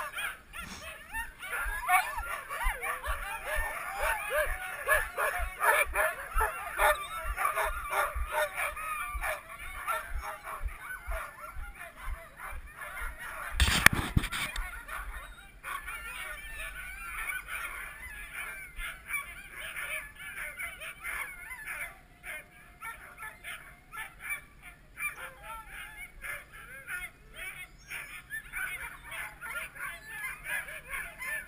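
A yard of excited sled dogs yelping and barking over one another at harnessing time, dense and loud for the first dozen seconds, then thinner and fainter. One loud knock comes about fourteen seconds in.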